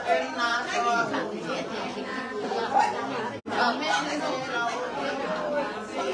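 Several people talking over one another in a room, in a steady chatter. The sound cuts out for an instant about three and a half seconds in.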